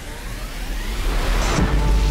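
Background music giving way to a rising hiss that builds and peaks about one and a half seconds in, a sweep-style transition effect, with a low bass underneath.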